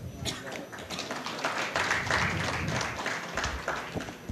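Scattered hand-clapping from a small audience, building to its fullest about halfway through and thinning out near the end.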